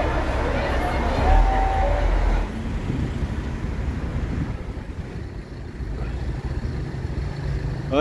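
Street noise among a crowd and standing vehicles, with two short held tones and a heavy low rumble. It cuts off abruptly about two and a half seconds in, leaving quieter, low street background noise.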